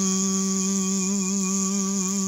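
A man humming one long, steady low note with a slight waver.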